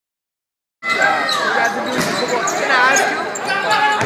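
Silence, then about a second in the sound of a basketball game in a gym cuts in: a basketball bouncing on the hardwood court amid players' and spectators' shouts echoing in the hall.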